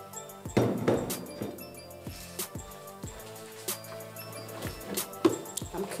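Background music with steady held tones, and scattered clinks and knocks of a spatula against a stainless steel mixing bowl.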